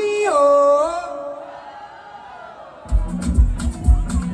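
A woman singing live into a microphone through stage speakers, holding a long note that steps down in pitch and then fades away. About three seconds in, a dance track with a heavy bass drum and a fast beat kicks in loudly.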